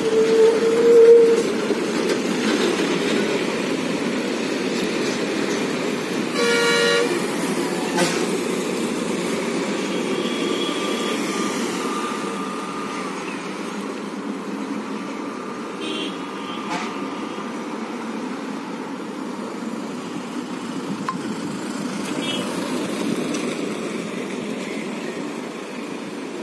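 Road vehicles on a hill road hairpin bend. A van's engine runs as it rounds the bend and fades over the first dozen seconds. A long horn note ends about a second in, and a short horn toot sounds about seven seconds in.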